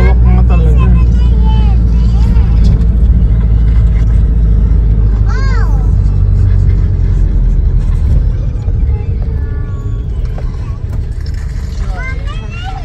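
Steady low rumble of a car's engine and road noise heard from inside the moving car, getting quieter about eight seconds in.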